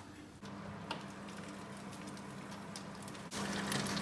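Steady low hum of a fan oven. From about three seconds in, with the oven door open, light crackling from chicken sizzling on a tray inside.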